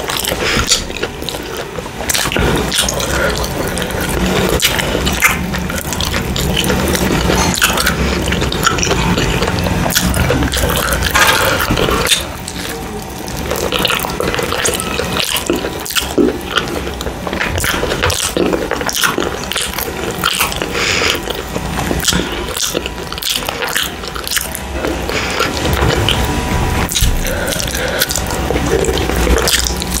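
Close-miked wet chewing and mouth sounds of someone eating a steamed paneer momo with other Chinese-style food by hand, with dense smacking clicks throughout.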